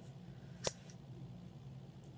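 A single short, sharp click from a handheld ear piercing gun being handled.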